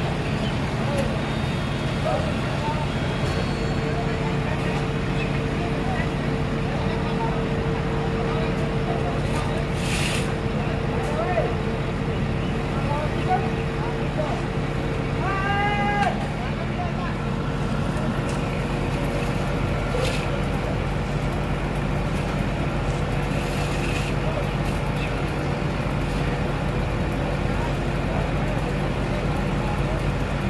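Asphalt paver's diesel engine running steadily, with a few short knocks and a brief shout about halfway through.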